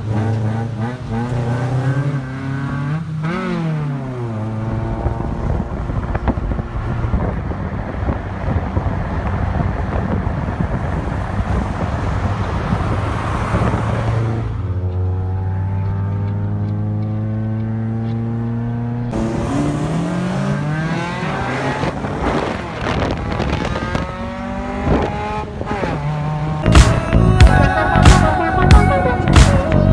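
Car engine revving and accelerating, its pitch climbing and dropping several times, with dense exhaust and road noise under load in the middle stretch and a slowly falling drone as it eases off. Sharp, regular beats of music come in near the end.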